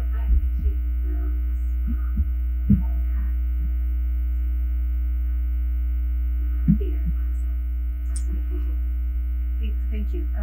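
Steady low electrical hum with several fainter steady tones above it, from the meeting room's microphone and sound system, broken by a few soft knocks, the clearest near three seconds in and near seven seconds in.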